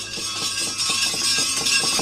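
Rapid, even knocking with a faint metallic ringing behind it: the wayang kulit dalang's wooden cempala rapping on the puppet chest, with the kepyak metal plates, in a pause between spoken lines.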